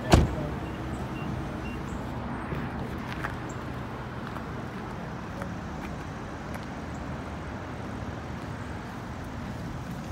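A car door shut with a single thud, followed by the steady low running sound of the Nissan Altima idling.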